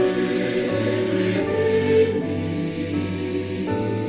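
Church choir singing a slow anthem in long held chords, moving to a new chord twice.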